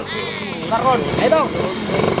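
A man's voice chanting and talking, with a Suzuki Crystal two-stroke motorcycle engine idling faintly underneath.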